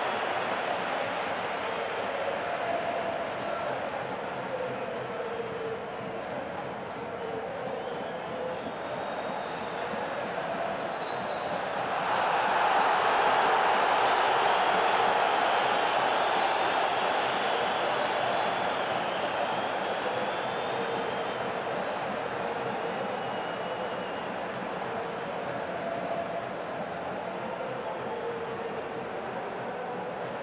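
Football stadium crowd, a steady mass of noise with chanting voices through it. It swells louder about twelve seconds in and stays up for several seconds before settling back.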